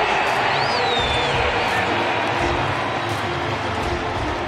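Stadium crowd cheering a touchdown, a steady roar with a single high rising-and-falling tone about a second in.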